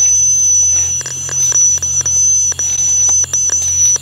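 A steady high-pitched whine, broken by a few brief gaps, over a low hum, with scattered faint clicks.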